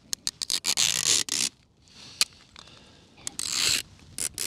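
A jacket zipper being worked in short pulls, with a few quick clicks, a rasping pull about a second in, a single click, and another rasping pull near the end.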